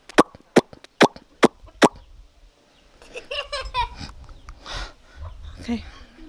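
Chickens' beaks tapping on metal pots and bowls: a quick run of about seven sharp clinks in the first two seconds. Quieter vocal sounds follow from about three seconds in.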